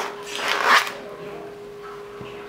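A brief rustling, crackling noise from something being handled at the cutting board. It is loudest just under a second in.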